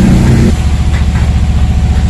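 Engine-driven woodworking machine running steadily with a low, even throb. About half a second in, a higher hum drops away and only the low throb remains.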